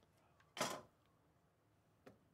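A single short sliding swish of trading cards being handled over a clear plastic card holder, about half a second in; otherwise near quiet.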